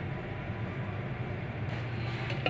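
Steady low hum of shop background noise, even and unbroken.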